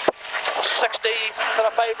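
Inside the cabin of a Toyota AE86 Corolla rally car at speed: engine and road noise, with a sharp knock right at the start.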